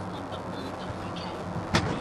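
Steady engine and road noise inside a moving car's cabin at road speed, with one sharp click about three-quarters of the way through.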